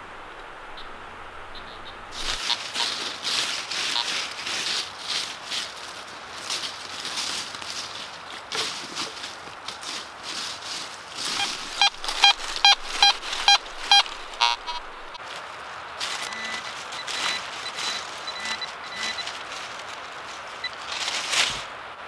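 Crunching and rustling in dry leaf litter, then a metal detector giving a quick run of repeated beeps over a target for a couple of seconds about halfway through, followed by a fainter steady tone.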